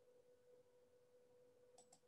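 Near silence: room tone with a faint steady hum, and two quick faint clicks near the end.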